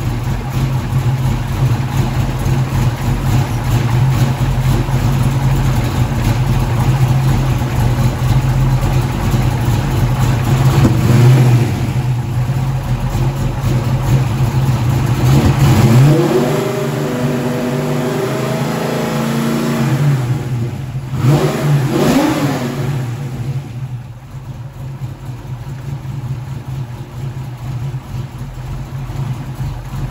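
Fox-body Mustang engine idling while its ignition timing is being retarded for nitrous, with the engine unhappy at that much retard. About halfway through it revs up and holds a higher speed for a few seconds, blips once more, then settles back to a quieter idle.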